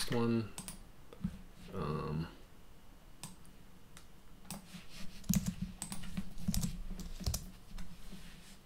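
Typing on a computer keyboard: a run of quick keystrokes starting about three seconds in, busiest in the second half. Before that there are two short vocal sounds.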